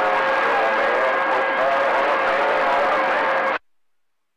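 CB radio receiving a burst of static with a steady whistle tone and faint garbled voices underneath. It cuts off abruptly as the squelch closes, about three and a half seconds in.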